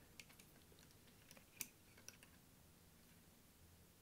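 Near silence with a few faint clicks and taps, the sharpest about a second and a half in: a 2.5-inch SSD in its bracket being slid into a laptop's drive bay under the lifted battery.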